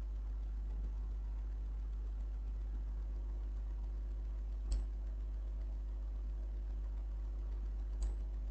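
A single computer mouse click a little past halfway, over a steady low electrical hum.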